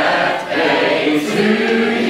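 A group of office colleagues singing together in chorus, holding long sustained notes.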